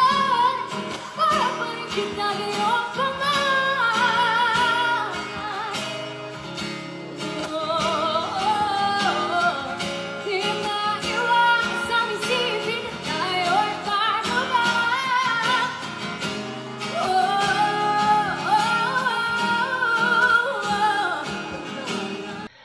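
A woman singing a Filipino pop song live over acoustic guitar accompaniment, with held notes that waver in vibrato.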